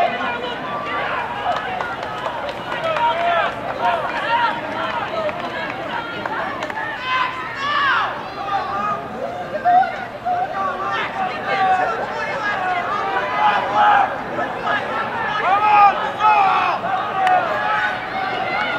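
Track-side spectators shouting and cheering runners on. Many raised voices overlap in short, high-pitched yells.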